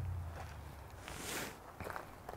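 Faint footsteps and scuffs on gravel, with a brief scraping swish about a second in.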